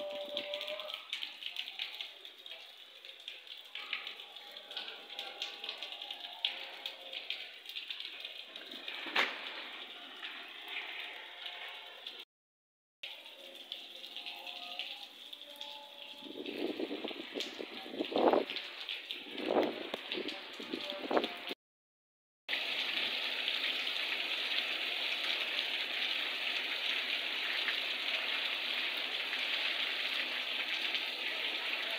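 Rain falling on a flooded street, a steady hiss that becomes denser and more even for the last third. A few louder low rumbles come in just past the middle, and the sound cuts out completely twice for under a second.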